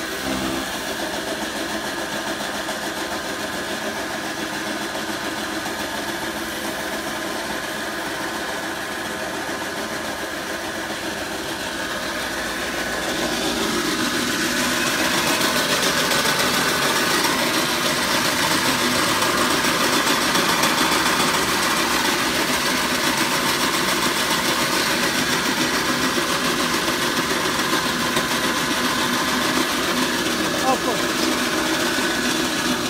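Electric chaff cutter (9ZT-0.4 straw and grass chopper driven by a 3 kW single-phase electric motor) running steadily while straw is fed in to be chopped. The sound grows louder about halfway through.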